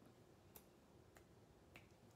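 Near silence broken by three faint, sharp clicks, evenly spaced a little over half a second apart.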